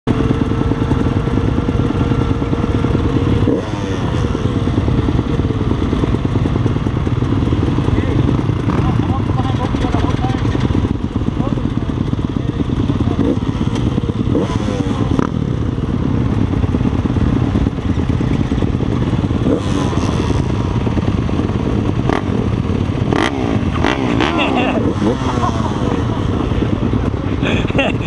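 Several motocross bikes running at close range, loud and steady, with the throttles blipped up and down now and then.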